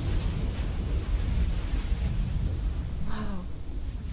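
A deep, low rumble that slowly fades, with a brief voiced murmur about three seconds in.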